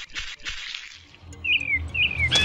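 A short rushing noise fades out in the first second. Then a low steady rumble begins, and two quick bird chirps fall in pitch near the end.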